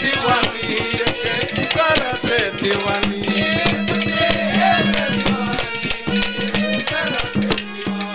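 Live Haryanvi ragni folk music: a wavering male singing voice over a harmonium's held tone, with a hand drum beating a fast, steady rhythm.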